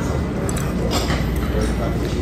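Indistinct voices of people talking nearby over a steady low hum, with a few faint clicks of chopsticks against a porcelain rice bowl.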